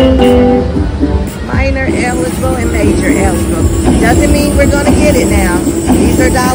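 Cash Crop slot machine playing its bonus-round music and sound effects, with voices mixed in.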